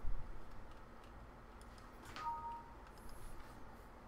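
Faint computer mouse clicks over a low room hum, with a thump right at the start as the loudest sound. A little past halfway, a click is followed by a brief two-note electronic chime.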